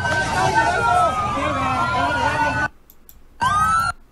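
Police sirens wailing, two at once with slowly rising and falling pitch, over crowd shouting and voices. The sound cuts off abruptly about two and a half seconds in, and a single short rising siren whoop follows near the end.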